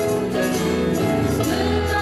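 A song: several voices singing together over instrumental backing with a steady bass.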